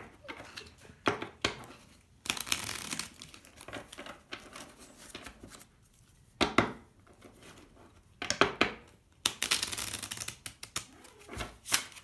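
A deck of playing cards being shuffled by hand, in several short papery bursts with pauses between them.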